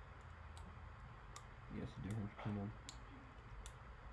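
Several isolated sharp clicks spread across a few seconds.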